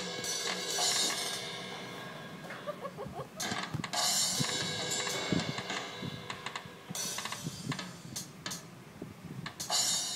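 A drum-kit app on a tablet, tapped at random by small hands: irregular drum hits and cymbal crashes with no steady beat, from the tablet's speaker.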